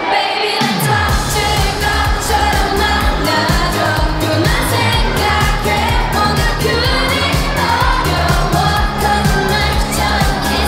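A pop song with sung vocals and a steady beat starts right at the beginning, with a falling bass sweep in its first second.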